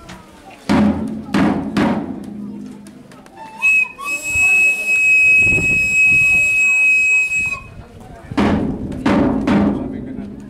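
Pipe and tabor played while walking. Three loud tabor drum strikes come about a second in, then a single high pipe note is held steady for about four seconds, and three more drum strikes come near the end.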